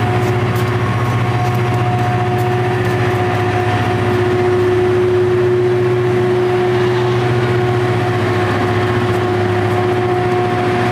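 Harsco rail grinder train passing while grinding, its grinding stones on the rail giving a steady whine over the rumble of its diesel engines.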